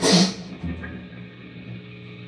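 A single sharp hit right at the start that rings off within about half a second, over a steady low amplifier hum from the band's gear.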